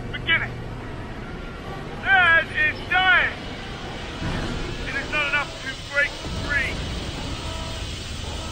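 A man's voice speaking dramatic cutscene lines in short phrases, over a low rumbling background drone.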